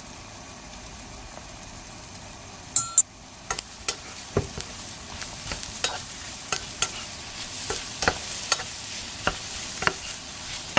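Food frying in a pan: after a steady hum, two sharp metallic clinks come just before three seconds in, then a high sizzle builds, spattered with irregular pops and crackles.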